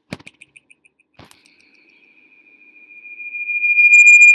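A sharp click followed by a few quick fading pips at one high pitch, a second click about a second in, then a single high steady whistle that swells steadily until it is very loud.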